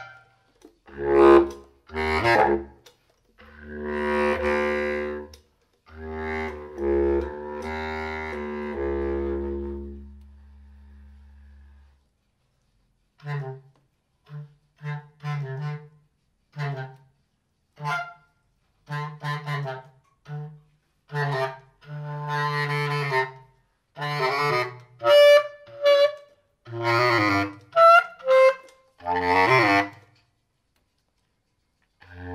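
Solo bass clarinet improvisation. Longer held, shifting notes for the first ten seconds or so fade out into a short silence, then come short, detached notes and bursts that grow busier toward the end.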